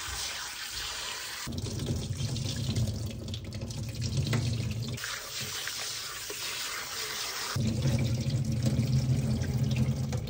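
Tap water pours into a stainless steel tray of raw baby octopus in a sink while hands rub and squeeze the octopus in the water. The running water switches abruptly a few times between a thin, hissing spray and a deeper, fuller gush.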